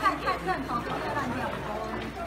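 Speech: several people chattering, their voices overlapping.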